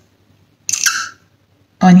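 A single short hiss of a perfume atomizer spray, about two-thirds of a second in, lasting under half a second; a woman's voice follows near the end.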